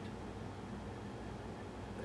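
Quiet room tone: a steady low hum with a faint hiss, nothing else happening.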